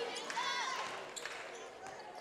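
Basketball dribbled on a hardwood gym floor, a few separate bounces, with faint voices from the crowd in the gym.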